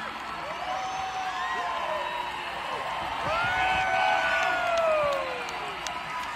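Large stadium crowd cheering, shouting and whooping as a song ends, with many long drawn-out calls; the cheering swells about three seconds in and eases off near the end.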